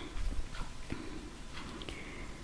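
Faint handling noise from crocheting: a low bump near the start, then a few light clicks and soft rustling as yarn and fabric are handled.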